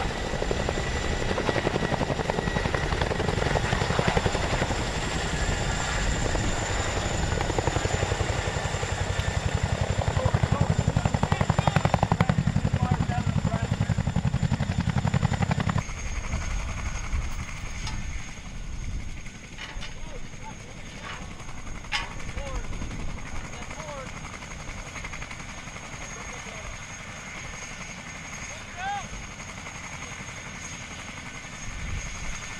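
A CH-47 Chinook tandem-rotor helicopter hovers close overhead, with a loud, steady beat of rotor blades and a high whine above it. About sixteen seconds in, the sound cuts suddenly to a much quieter open-field background, broken by a few sharp clicks.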